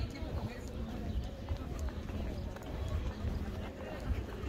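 Footsteps of a person walking on pavement, irregular short knocks, over a steady low rumble of wind on the microphone, with a voice faintly in the background.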